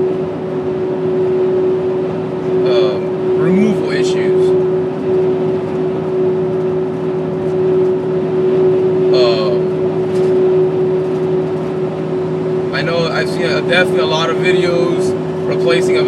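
Steady road and engine noise inside a van cruising at highway speed, with a constant hum running under it.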